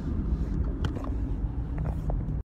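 Steady low rumble of a car's engine and road noise heard inside the moving cabin. A few light clicks come about a second in and again near the end as the phone is handled.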